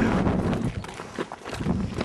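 Footsteps on a mountain path, with a steady rustling noise and scattered light knocks.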